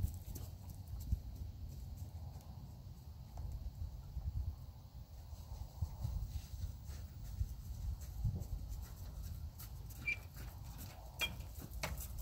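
Faint outdoor background noise: a low, uneven rumble with scattered soft knocks and clicks, and a couple of brief faint squeaks near the end.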